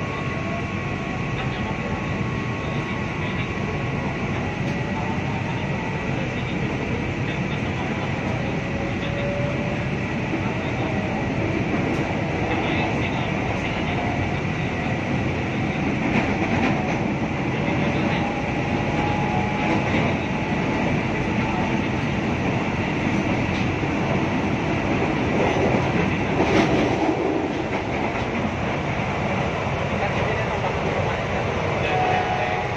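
Electric commuter train (KRL) heard from inside the carriage as it runs and gathers speed after leaving a station. Wheels run steadily on the rails under a faint rising motor whine, with a louder rattle near the end.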